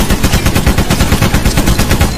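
Rapid machine-gun fire sound effect: one long, loud burst of about nine shots a second, dropping away sharply at the end.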